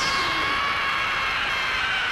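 Anime sound effect: a held chord of high, steady ringing tones with little low end, the build-up on the frame where the punch strikes.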